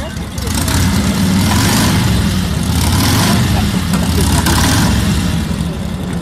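A motor vehicle's engine running loudly nearby, with a steady low hum and repeated surges as it revs, easing off a little near the end as it moves away.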